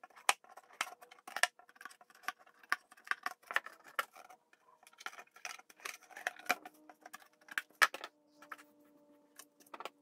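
Scissors snipping into a paperboard chicken bucket: a run of sharp, irregular snips, one to three a second. A faint steady hum joins about halfway through.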